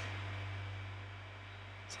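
Quiet room tone: a steady low hum with faint hiss.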